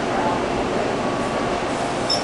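Electric deli slicer running with a steady whir while slicing provolone cheese.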